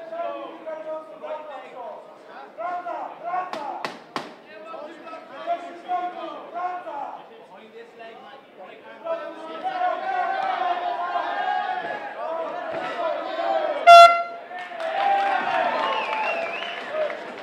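People shouting over a fight, with two sharp slaps about four seconds in. About two seconds before the end a short, loud horn blast sounds, the signal that the round is over.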